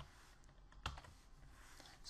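Near silence with a single computer keyboard keystroke click a little under a second in.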